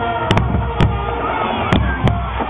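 High school marching band playing, with held notes and sharp, irregular drum hits: a quick double hit, then single hits near the middle and near the end.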